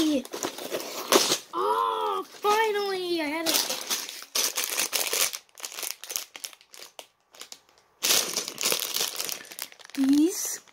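Clear plastic bag of toy building bricks being handled: a run of short crackles and clicks from the plastic film, with a louder, denser stretch near the end.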